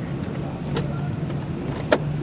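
Steady low hum of a car engine and street traffic, with a sharp click near the end.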